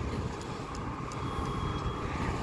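Steady outdoor background noise: a low rumble and even hiss with no distinct event standing out.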